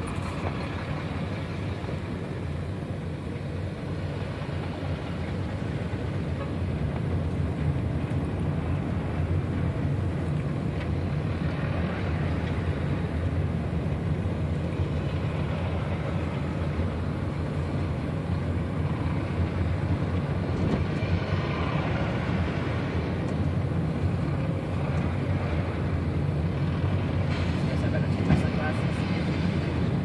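Road and engine noise heard inside a moving vehicle on a highway: a steady low rumble that grows a little louder a few seconds in, with heavy lorries passing close alongside.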